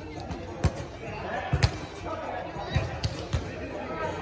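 Beach volleyball being struck by players' hands and forearms in a rally: a series of sharp thumps, two in quick succession near the middle, over players' voices.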